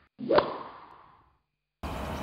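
Logo-reveal sound effect: a swoosh that builds into a sharp whip-like hit about a third of a second in, then fades out over the next second. After a short silence, outdoor background noise comes in just before the end.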